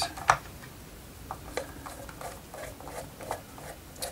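Scattered small clicks and ticks of a screwdriver turning out the small screws that hold the LED cluster board in a traffic light module, with one sharper click about a third of a second in.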